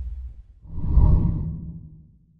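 Whoosh sound effect of a TV channel logo ident: a low, rumbling swoosh that swells up about a second in and then fades away.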